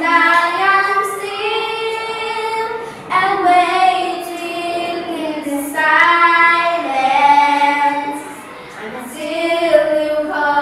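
A small group of young schoolchildren singing a song together, with long held notes and smooth rises and falls in pitch.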